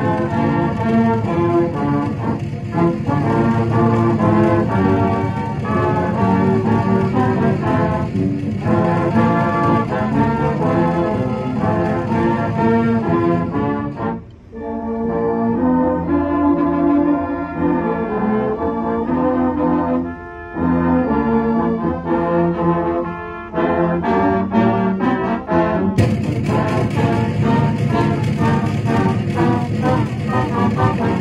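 Marching band brass section playing, led by trombones and trumpets. A short break about halfway gives way to a quieter, lower passage, and the full band comes back in bright and loud a few seconds before the end.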